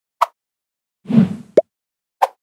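Sound effects for an animated logo intro: a short pop near the start, then about a second in a louder whoosh with a low thud, followed at once by another short pop.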